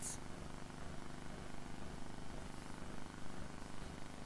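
Steady low hum of the lecture hall's room tone, with faint steady tones underneath and no distinct events.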